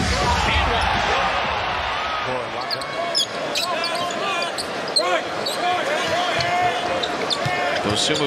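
Arena crowd cheering for about the first two seconds, then a basketball bouncing on a hardwood court with many sharp sneaker squeaks as players move.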